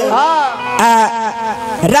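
A man singing a Bhojpuri gaari, a teasing wedding folk song, into a microphone, holding two long notes that waver in pitch.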